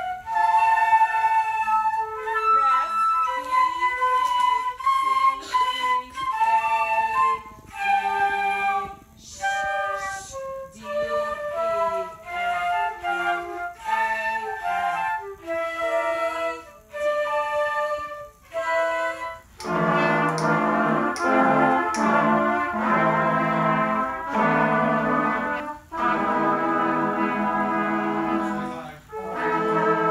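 A young students' flute section plays a melody together in short phrases with brief gaps between them. About two-thirds of the way through, this gives way to a trumpet and trombone section playing, a fuller and lower sound.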